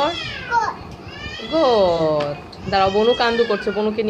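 A young child's high-pitched voice calling out in drawn-out sounds that rise and fall in pitch, without clear words.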